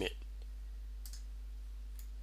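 A faint computer mouse click about a second in, over a steady low hum.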